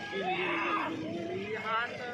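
Men's voices calling out over the water, one drawn out in a long held shout that dips slightly in pitch and rises again, then a shorter wavering call near the end.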